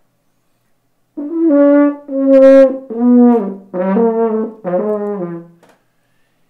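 French horn played solo: a short, slow phrase of about five held notes that steps downward in pitch. It starts about a second in and dies away shortly before the end. It is a demonstration of horn tone.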